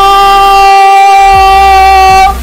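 A man's goal scream, one long unbroken note held at a steady pitch and very loud.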